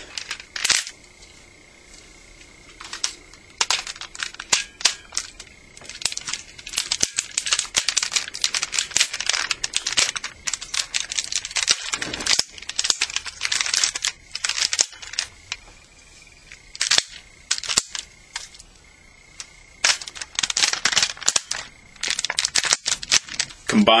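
Hard plastic parts of a Transformers Energon Tidal Wave toy clicking and snapping in clusters of quick clicks, with short pauses between, as its three ship sections are fitted together into one combined vehicle.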